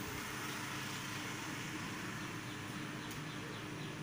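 Steady background noise with a faint constant low hum and no distinct events.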